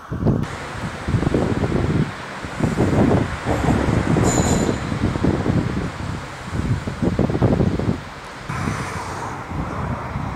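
Wind buffeting the microphone in irregular low gusts over a steady outdoor rush.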